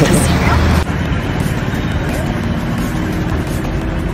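Steady low rumbling background noise with indistinct voices in the first second; the sound changes abruptly about a second in, then stays an even rumble.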